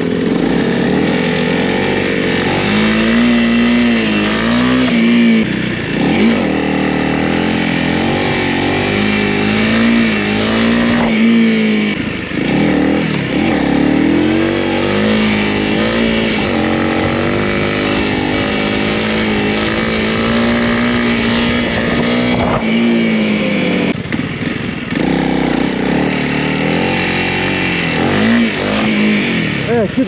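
Honda CRF300L's single-cylinder four-stroke engine running under way, its note rising and falling with the throttle, over a steady rush of wind and road noise.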